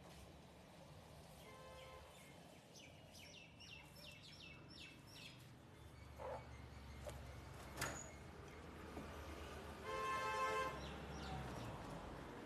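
Street ambience around the fish-cutting block. A horn gives a short toot about a second and a half in and a louder honk of under a second near the end, over a low traffic rumble. In between, a bird chirps a quick run of about six repeated falling notes, and there are two sharp knocks.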